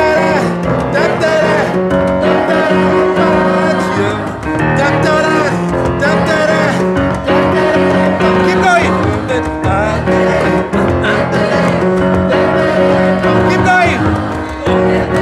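A group of mixed amateur voices singing a repeating part together in harmony, over a hand-drum groove on djembes and piano accompaniment.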